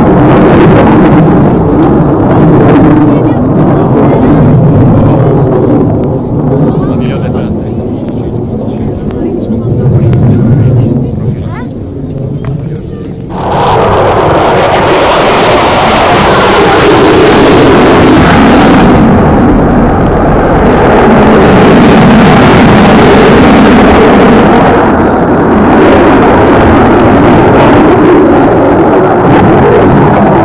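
F-16 fighter jet's engine roaring overhead as a loud, continuous rumble. It sags for several seconds, then surges back suddenly about thirteen seconds in and stays loud, hissier at times.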